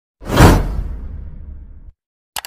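Whoosh sound effect: a sudden swell of rushing noise with a low tail that fades over about a second and a half, then cuts off.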